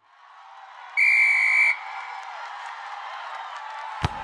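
Sports crowd noise fading in, with one loud referee's whistle blast of under a second about a second in.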